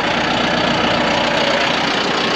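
John Deere 5090E tractor's four-cylinder diesel engine idling steadily.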